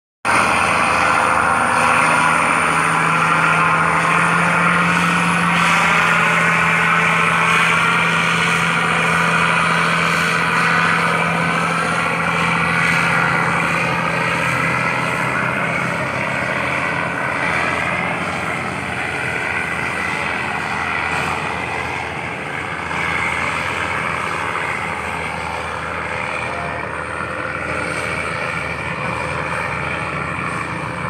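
Tugboat's diesel engine running steadily under load as it tows a barge, a low drone that fades over the first half as the boat pulls away.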